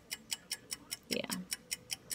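Rapid, even ticking, about five sharp clicks a second, starting suddenly and keeping a steady beat.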